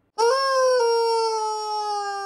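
Rubber chicken squeak toy squeezed, giving one long scream that starts just after the start and slowly falls in pitch.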